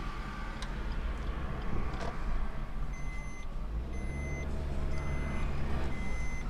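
Steady engine and road rumble inside a moving car's cabin. From about halfway through, an electronic warning beep sounds, each beep about half a second long, repeating once a second.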